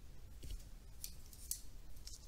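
Three faint, short, high scratchy clicks about half a second apart, over quiet room tone.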